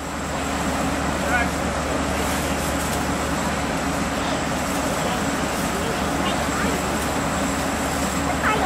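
Standing diesel passenger train running steadily at the platform: a continuous low mechanical drone and hum. It grows louder within the first half second, then holds level.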